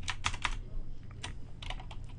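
Computer keyboard being typed on: irregular, scattered keystroke clicks as a line of code is entered.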